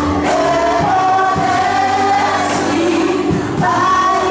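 Gospel praise song: several voices singing together through microphones, backed by a band with keyboard and drums keeping a steady beat.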